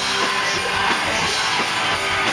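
Punk rock band playing live: distorted electric guitar, bass and drums with a shouted lead vocal.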